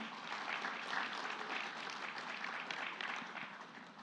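Audience applauding, steady at first and dying away near the end.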